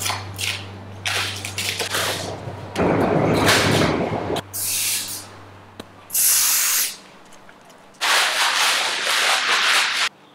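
Aerosol spray can spraying onto glass in several separate hissing bursts, the longest filling the last two seconds. About three seconds in there is a louder, deeper rush of noise.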